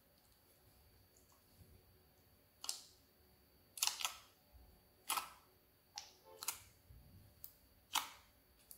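Clear slime being squeezed and kneaded by hand in a glass bowl, giving a string of sharp clicks and pops, about seven of them, irregularly spaced from about two and a half seconds in.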